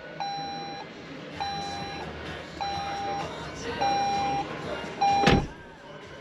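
Toyota Aygo X's in-car warning chime: one steady tone repeating five times, about a second apart. Near the end a single loud thump, the loudest sound here.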